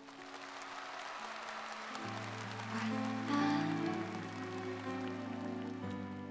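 Audience applause breaking out suddenly at the end of the song, over the band's closing instrumental music holding sustained chords that change a couple of times.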